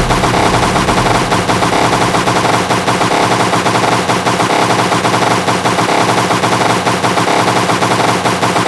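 Speedcore track: distorted kick drums hammered at extreme tempo, around 666 beats per minute, so fast they run together into a continuous rattle over sustained distorted tones.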